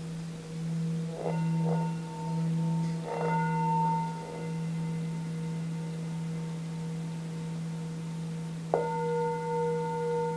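Singing bowl sounded with a mallet: a low, wavering hum rings on throughout. It is struck again about a second in, around three seconds, and near the end, each strike adding higher ringing overtones.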